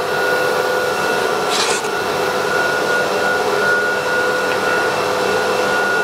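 Airtech vacuum pump of a CNC router's vacuum hold-down table running steadily, a rushing noise with a steady whine, drawing air through the table to hold the material. A brief hiss comes about a second and a half in.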